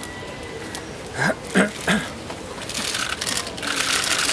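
King penguin giving three short, loud calls in quick succession, each bending in pitch, followed by a rising wash of noise near the end.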